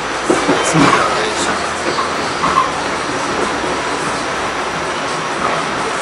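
New York City subway train, an A train, running on its tracks, heard from inside the car: a steady rumble of wheels and running gear, with a few louder knocks in the first second or so.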